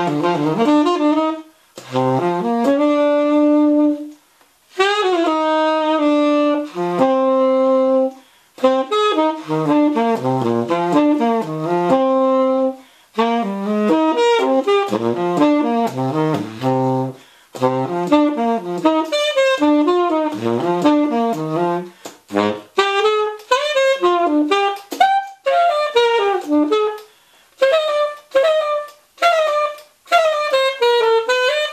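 The Martin tenor saxophone with a Drake "Son of Slant" 7L mouthpiece and a Rico Royal #3 reed, played unaccompanied: improvised jazz lines in phrases broken by short breath pauses, the phrases getting shorter and choppier near the end.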